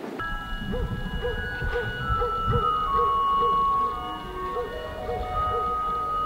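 Background music: a slow melody of long held notes that step from pitch to pitch, over a lower figure repeating about twice a second.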